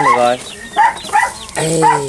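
Puppies giving a few short, high-pitched yips.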